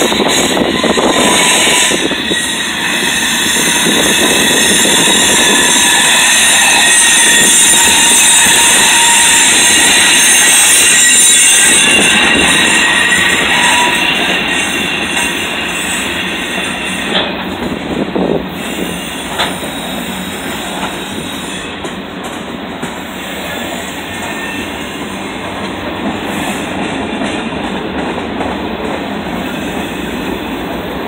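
Freight cars rolling past close by: steel wheels running on the rails, with high-pitched wheel squeal through the first dozen seconds. The rumble then eases somewhat, with a few sharp clanks a little past the middle.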